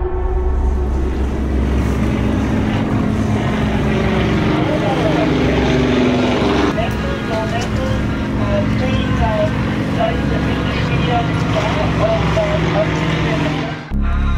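Motorboat engine running under steady noise, with indistinct voices over it.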